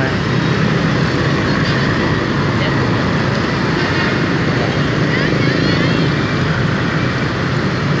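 Heavy motorbike and scooter traffic: many small engines running and passing at once, blending into a steady, loud wash of road noise.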